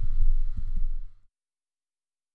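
A low rumble on the voice microphone with a faint breathy sound, cutting off suddenly about a second in.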